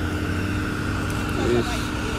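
Car running, a steady low rumble of engine and road noise heard from inside the car, with a steady hum that stops about one and a half seconds in. A man says a word near the end.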